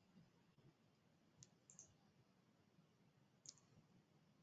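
Near silence, broken by a few faint computer mouse clicks: a small cluster about one and a half seconds in and a single click near the end.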